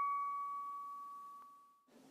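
A single bell-like chime note from the intro music ringing out and fading away, dying out near the end.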